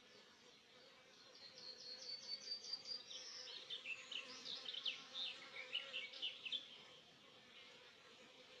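Honeybees buzzing steadily around an open hive. Over it, from about a second and a half in to near seven seconds, comes a run of quick, high chirping notes: first an even series, then a quicker, varied string.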